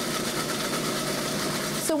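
Countertop food processor motor running steadily, chopping herbs, lemon juice, vinegar and olive oil into a fine chimichurri sauce.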